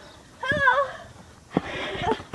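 A single high-pitched, wavering vocal call lasting about half a second, starting about half a second in, followed near the end by a short breathy rush of noise.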